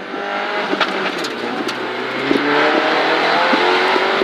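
Mini Cooper rally car's engine heard from inside the cabin, accelerating hard through the gears. Its pitch climbs and then drops at two upshifts, about halfway through and near the end, and the engine grows louder after the first.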